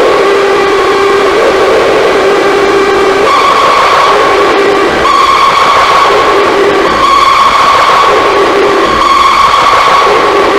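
Harsh noise from a no-input mixer feeding back on itself through fuzz and reverb: a loud, dense wall of distorted hiss with two droning feedback tones, one low and one higher. The low tone holds for the first three seconds, then the higher one takes over, and the low one keeps cutting back in for short stretches.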